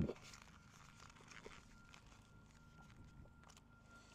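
Near silence with faint chewing and a few light clicks from handling a plastic fork and takeout cup, over a faint steady high tone in the background.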